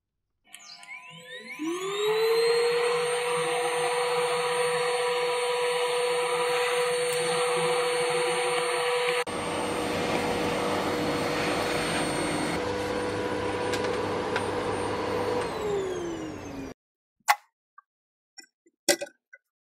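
Canister vacuum cleaner switched on: its motor whine rises to a steady pitch within about two seconds, then runs steadily as the hose nozzle sucks up sawdust from a concrete floor. Near the end it is switched off and the whine falls away, followed by a sharp clink.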